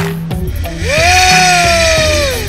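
DIY micro brushless inrunner motor spinning up to a high-pitched whine about a second in and holding it, the pitch easing slightly lower near the end. Background music with a steady beat plays under it.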